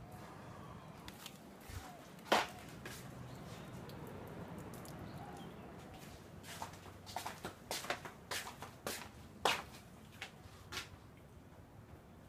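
Scattered clicks and knocks of someone walking about and handling things in a small room, one sharp knock about two seconds in and a run of them in the second half, over a low steady hum.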